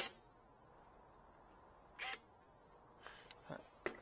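Near silence broken by a few sharp clicks: one loud click at the start, a short rattle about two seconds in, and another click just before the end.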